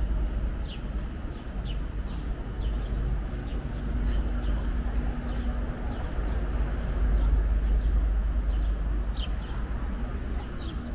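Busy city street ambience: a steady low rumble of traffic, swelling near the end, with small birds chirping in short repeated calls over it.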